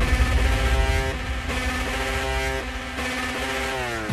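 Instrumental stretch of a slowed, pitched-down electronic song: held synthesizer chords over a low bass, changing about once a second, sliding down in pitch near the end.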